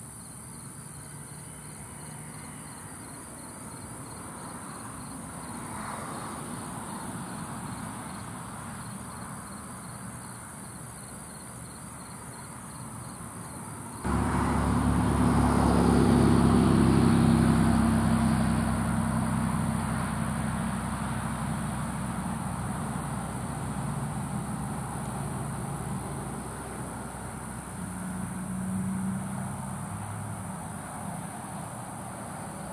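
Insects chirring steadily in the background. About halfway through, a motor vehicle's engine noise comes in suddenly, is loudest a couple of seconds later with a falling pitch, and then fades slowly.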